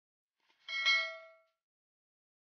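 A bell-like ding sound effect: one chime with several ringing tones that fades out within about a second, just after a faint click, as in a subscribe-button and notification-bell animation.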